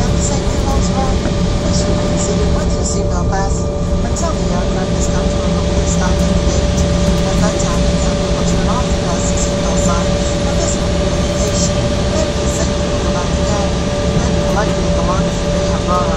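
Loud, steady cabin noise of an Embraer 170 jet rolling on the ground after landing: its two GE CF34 turbofan engines run with a steady whine of several tones over a constant rumble, heard from inside the cabin. Faint voices sound now and then beneath it.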